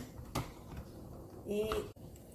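A single light click of plastic on plastic about a third of a second in: the steamer basket of a Béaba Babycook knocking against the appliance's blender jug as it is tipped over it.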